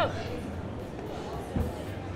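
Low gym room noise with one short, dull thump about one and a half seconds in.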